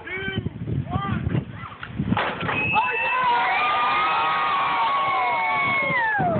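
Homemade catapult releasing with a short sharp clatter about two seconds in, followed by several people whooping together in one long, slowly falling cheer as the shot flies. Laughter and brief talk come before the release.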